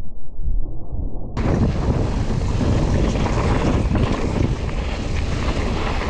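Mountain bike descending a dirt trail: wind buffets the helmet- or bar-mounted action camera's microphone over the sound of tyres rolling on the gravelly dirt. For the first second or so the sound is dull and muffled, then it suddenly turns bright and full.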